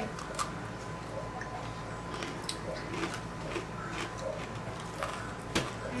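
Crisp chocolate sandwich cookies being bitten and chewed: scattered short crunches about a second apart, the sharpest a little before the end.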